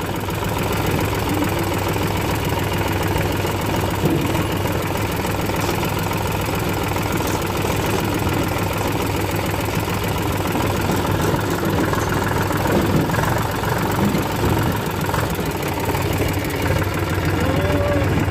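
Farm tractor's diesel engine running steadily, a continuous low even throb.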